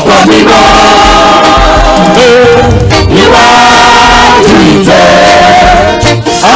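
Live gospel praise singing: a group of men singing together in long held, wavering notes, phrases breaking every two or three seconds, over a low bass beat. Loud.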